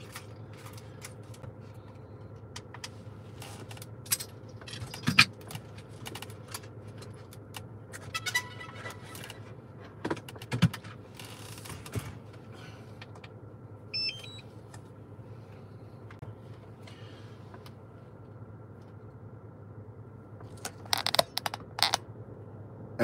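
Car cabin with the engine idling, a steady low hum, broken by scattered clicks, taps and rattles of things being handled. There is a brief high chirp about fourteen seconds in and a cluster of clicks near the end.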